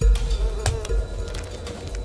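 A housefly buzzing steadily, a cartoon sound effect, over a low rumble, with a brief sharp stroke about half a second in.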